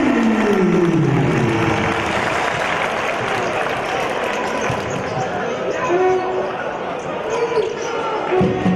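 Basketball arena crowd noise with a commentator's voice over it. A long drawn-out vocal exclamation falls steadily in pitch over the first couple of seconds.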